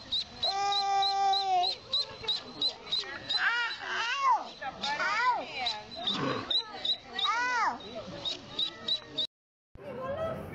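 Duckling peeping in short high calls, about three a second, without a break until a cut near the end. Voices sound over it, including one long steady cry about a second in.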